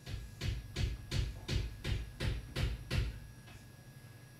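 A steady run of about nine dull thumps, close to three a second, that stops about three seconds in.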